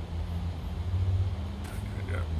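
A low, steady rumble in the background that swells a little about a second in.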